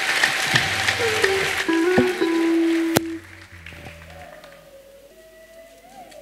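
Live worship band playing held chords under applause from the congregation. The applause breaks off suddenly about three seconds in, leaving softer sustained notes.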